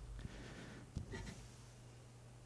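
Faint room tone with a steady low hum, some light rustling and a single sharp click about a second in.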